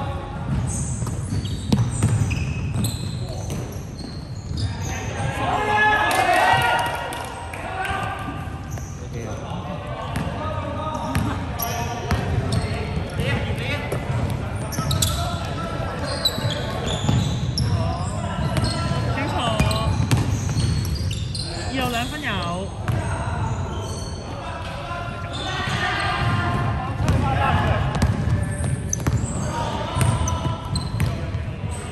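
A basketball bouncing on a hardwood court as players dribble and move the ball, with players' voices calling out. Everything echoes in a large sports hall.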